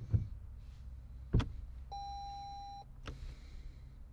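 A car's electronic dashboard chime sounding once, a steady beep about a second long, over a low steady hum in the cabin. Two thumps come before it and a click after.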